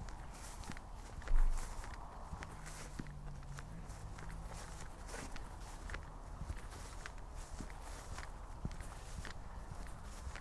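Footsteps walking at a steady pace through grass, about two steps a second. A single loud, low thump about a second in.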